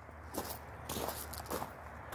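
Footsteps crunching on gravel and dirt: a few uneven steps.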